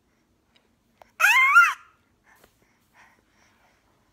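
An infant's single short, high-pitched squeal about a second in, its pitch wavering up and down.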